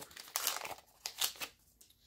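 Foil-lined trading card booster pack wrapper crinkling as it is pulled open and the cards are slid out. It comes in several short bursts over the first second and a half.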